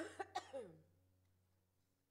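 A woman coughing and clearing her throat close to a handheld microphone: three quick coughs, then a short voiced sound falling in pitch, all within the first second. She says she is still recovering from COVID, with asthma and regular coughing fits. A low held musical note fades out beneath.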